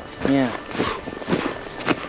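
Boots stepping on snow and dry grass, a few separate steps about half a second apart.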